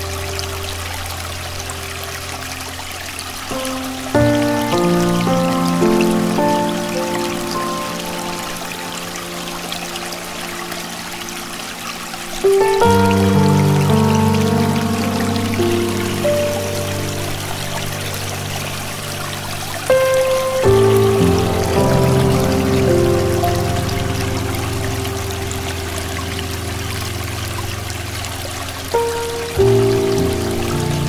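Slow, soft solo piano music with a steady bed of flowing water beneath it. New chords are struck about every eight seconds and left to ring and fade.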